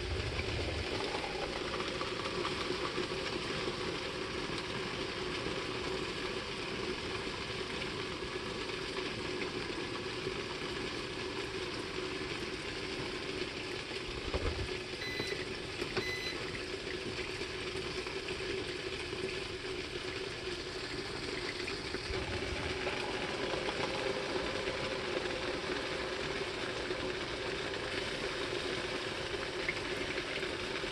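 Hot water poured steadily from a kettle onto coffee grounds in a paper-filter pour-over dripper, a continuous rushing, splashing hiss with a light knock about halfway through.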